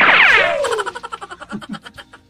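A cartoon sound effect: several whistling tones sweep down together, then a fast run of clicks fades out over about a second.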